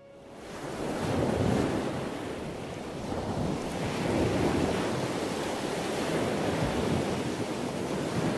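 Steady rushing outdoor noise, like surf or wind, that fades in and then swells and eases every few seconds.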